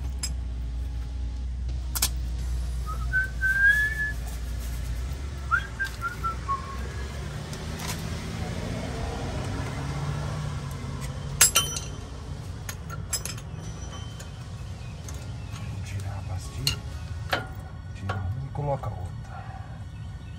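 Sharp metallic clinks and knocks as a truck's front brake caliper and worn brake pads are worked loose by hand, with the loudest clink about halfway through. A few brief whistle-like chirps come a few seconds in, over a low rumble that fades out around the same time.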